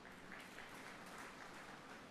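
Faint applause from an audience in a hall.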